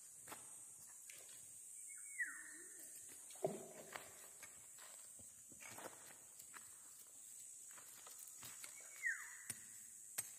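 Faint scattered clicks and crunches of footsteps on riverbed stones and a machete cutting amaranth stalks, over a steady high hiss. An animal gives a short call falling in pitch twice, about two seconds in and again near the end.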